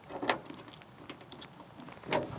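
Faint clicks and scrapes of a key going into and turning in a 1965 Ford Mustang's trunk lock as the lid is unlatched. The loudest click comes about a third of a second in, followed by a few small ticks.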